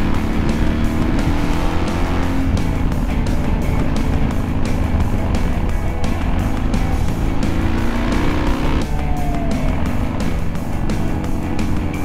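Background music with a steady beat laid over a BMW R1100GS's flat-twin engine running under throttle as the motorcycle rides through bends.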